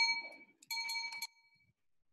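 Two identical short bell-like chimes, about 0.7 s apart, each ringing briefly and fading.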